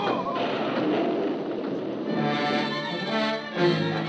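Old-time radio sound effect of a storm and a capsizing boat, a rushing noise without clear pitch. About two seconds in it gives way to a dramatic orchestral music bridge with sustained chords.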